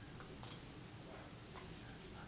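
Faint rubbing of fingertips spreading face primer over the skin of the cheeks and nose.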